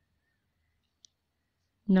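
Near silence with a single faint, very short click about halfway through; a voice starts speaking at the very end.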